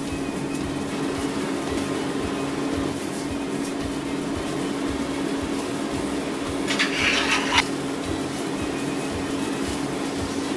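A steady low hum with a constant tone and hiss, under quiet background music. A short rustle comes about seven seconds in.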